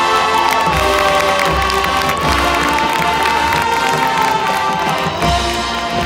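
Marching band brass holding long chords that change about halfway through, over low bass drum hits, with a crowd cheering.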